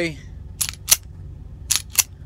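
The slide of an unloaded Ruger LCP II pistol being racked by hand twice, giving four sharp metallic clicks in two pairs, each pair a quarter second apart.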